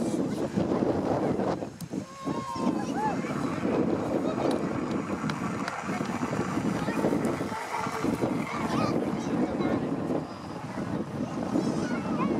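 Crowd of spectators talking and calling out over one another, a steady babble of many voices, with wind buffeting the microphone.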